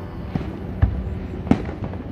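Distant aerial fireworks shells bursting: three booms about half a second apart, the last the loudest.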